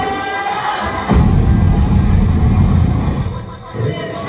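Live electronic rock band playing loud through a venue PA, heard from the crowd. A held melodic line gives way about a second in to a heavy bass-and-drum section, which dips briefly near the end before coming back in, with crowd noise underneath.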